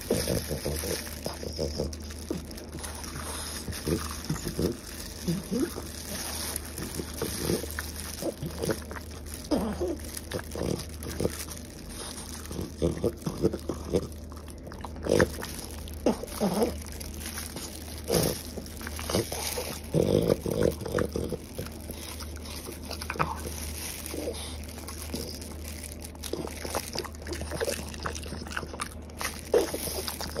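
French bulldog chewing and gnawing on a cooked octopus tentacle, with irregular wet bites and mouth smacks. A steady low hum runs underneath.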